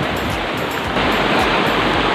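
Stream water rushing over rocks in a shallow cascade: a steady rush that gets a little louder about a second in.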